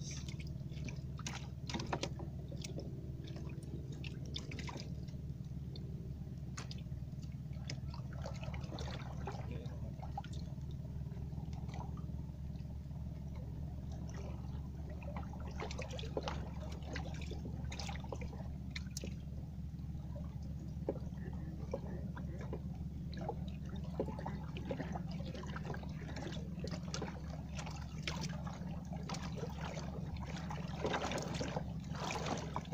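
Water dripping and splashing around a small fishing boat, with many small irregular ticks and clicks, over a steady low hum.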